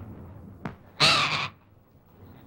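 A macaw gives one loud, harsh squawk about a second in, lasting about half a second, just after a faint click.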